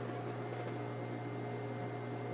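Steady low electrical hum with fainter higher overtones over a light background hiss, unchanging throughout.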